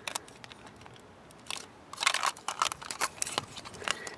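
Plastic parts of a Bandai MagiKing combiner robot toy clicking and knocking as they are handled and moved by hand: scattered sharp clicks, busiest about halfway through.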